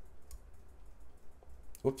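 A few faint, scattered clicks from a computer mouse and keyboard over a low steady hum, with a voice starting near the end.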